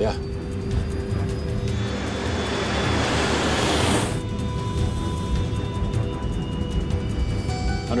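Tense, droning background music over a low rumble. About two seconds in, the rushing noise of a jet engine on its takeoff roll swells up and cuts off suddenly at about four seconds.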